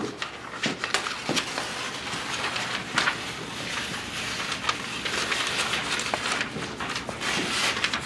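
Paper pattern sheets rustling and being torn as several people handle them, with scattered short crackles.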